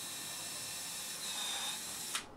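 Cordless drill running at speed, drilling a pilot hole into 18mm MDF: a steady high motor whine over the hiss of the bit cutting, the pitch lifting slightly past the middle.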